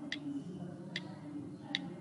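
iPhone on-screen keyboard key clicks as letters are typed: three short, sharp ticks a little under a second apart.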